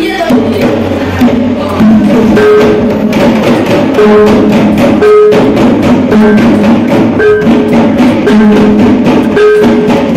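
Javanese reog kendang ensemble playing: a dense, fast pattern of kendang drum strokes, with a pot gong ringing about once a second alternating with a lower gong note. The music gets louder about two seconds in.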